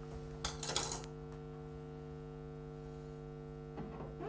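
Steady electrical hum made of several low, unchanging tones, with a couple of short noises in the first second.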